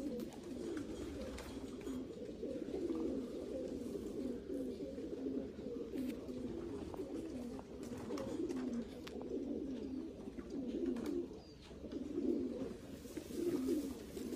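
Racing pigeons cooing together in a steady, low, overlapping chorus, with a few faint clicks.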